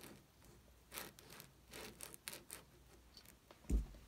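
Handling noise: soft rubbing and rustling with scattered faint clicks, and one brief low thump near the end.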